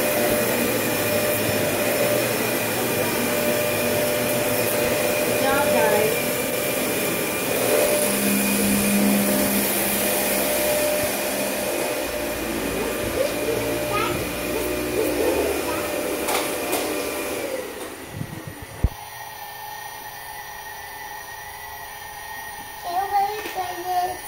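Household vacuum cleaner running with a steady whine, cutting off about three-quarters of the way through.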